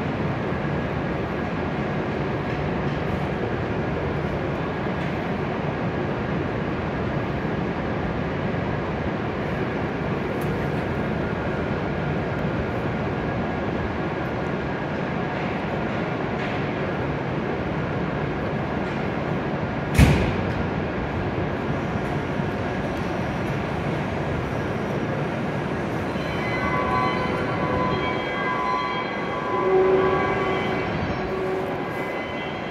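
Steady hum of a stationary E7-series Shinkansen train at the platform, with a single sharp click about two-thirds of the way through. Near the end, a few steady tones sound.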